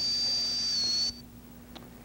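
High-speed air-turbine dental handpiece running with its air-and-water mist coolant: a steady high-pitched whine over a hiss. The whine dips slightly in pitch and cuts off suddenly about a second in.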